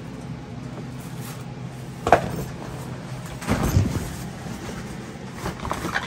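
Plastic storage tote and cardboard boxes being shifted and handled: a sharp knock about two seconds in, a louder low clatter and scrape about a second later, then a few lighter knocks near the end.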